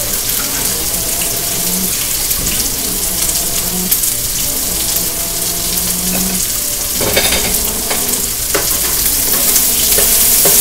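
Cubed chicken breast sizzling steadily in oil in a non-stick wok. A couple of short clatters come about seven and eight and a half seconds in.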